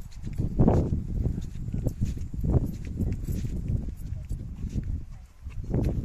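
Wind buffeting a phone's microphone outdoors: a deep rumble that swells in gusts about every two seconds, with light scattered ticks.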